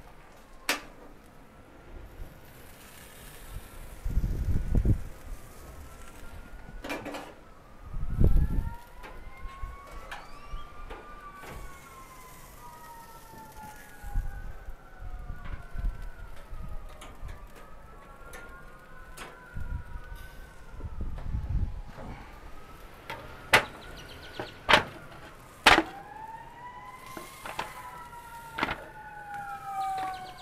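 Several sirens wailing at once, their slow rising and falling tones overlapping throughout. A few gusts of wind rumble on the microphone, and a handful of sharp metal clanks come as pork chops are lifted off the smoker's grates, the loudest near the end.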